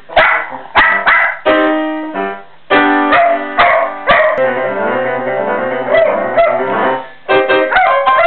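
A small mixed-breed dog howling along to piano playing. Its wavering, rising and falling cries sound mostly in the second half, over sustained chords, after a run of struck chords.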